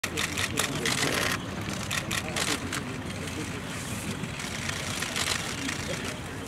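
Outdoor background of a steady low rumble, typical of distant traffic, with faint voices and several short bursts of hiss, mostly in the first second or so. The perched desert wheatear is not heard calling.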